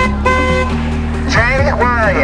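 A vehicle horn gives one short, steady toot, then about a second later comes a wavering, voice-like call, all over the low steady hum of street traffic.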